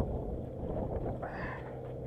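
Boat engine humming steadily with wind buffeting the microphone, and a faint voice about halfway through.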